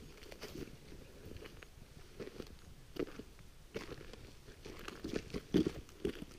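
Footsteps crunching softly and unevenly on a gravel road dusted with snow, with a few louder crunches in the second half.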